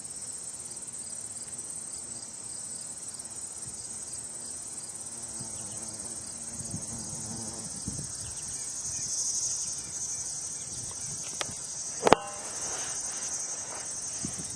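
A steady, high-pitched insect trill, pulsing finely and swelling briefly around the middle. A sharp click about twelve seconds in is the loudest sound.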